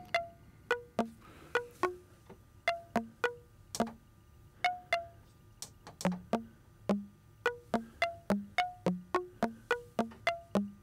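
Eurorack modular synth sequence: a Rings-style resonator module from After Later Audio plays short, plucked, chime-like notes, hopping between pitches of an F major scale in a randomized pattern. The notes are sparse at first and run faster and more evenly, about three a second, in the second half.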